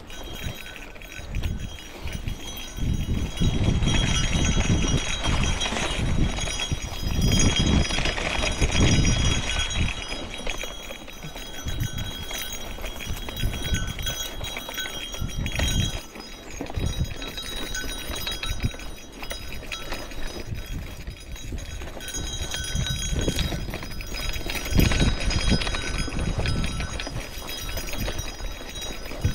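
Gravel bike riding up a lumpy, overgrown dirt singletrack: an irregular low rumble with knocks from the tyres and bike jolting over the bumps.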